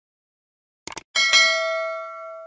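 Notification-bell sound effect for a subscribe animation: a quick double mouse click about a second in, then a bell ding struck twice in quick succession that rings on and fades.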